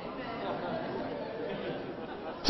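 Low, steady murmur of a congregation in a large hall, with no single voice standing out.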